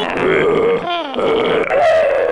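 A man's loud, wordless yells, several sliding down in pitch, the last one long and falling.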